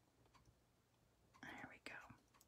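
Near silence: room tone, with a few faint ticks and a faint short sound about a second and a half in.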